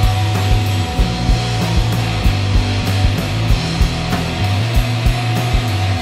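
Rock band playing an instrumental passage live: distorted electric guitar, electric bass and drum kit, with the kick drum hitting about three times a second under sustained bass notes.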